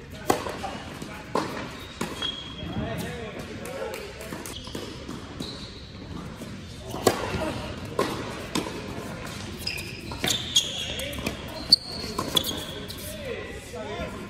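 Tennis rally on an indoor hard court: sharp racket strikes and ball bounces, a cluster in the first couple of seconds and more from about seven seconds on, with short high squeaks of sneakers on the court surface, echoing in a large hall.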